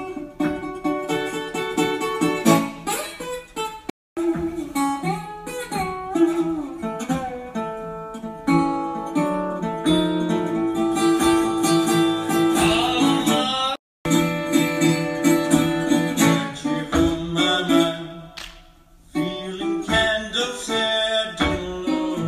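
Live solo set: a man singing into a microphone while playing guitar, amplified through the hall's PA. The sound cuts out for an instant twice, about 4 s and 14 s in.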